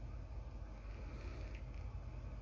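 Quiet room tone: a steady low hum with a faint even hiss, and no distinct handling sounds.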